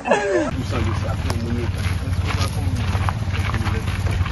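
Indistinct voices of a group over a steady low hum, with scattered light clicks; the sound changes abruptly about half a second in.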